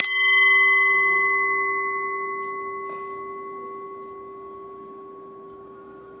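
Title boxing ring gong, a red metal dome bell, struck once with its small hammer and left to ring, the bright tone fading slowly over several seconds.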